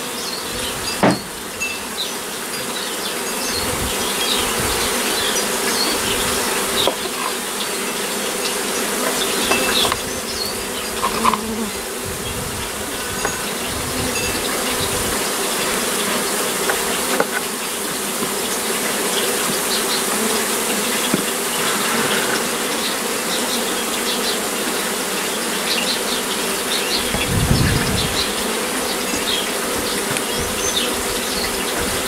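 A large honeybee colony buzzing steadily and loudly as its nest is opened and its comb cut out, with a few brief knocks and a low bump near the end.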